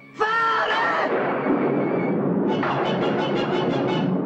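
A long crash of thunder rumbling for about three seconds under dramatic orchestral film music, after a short shouted note at the start.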